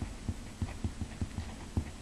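Felt-tip marker writing on paper: an irregular run of soft, low taps, several a second, as the tip strikes and lifts off the page.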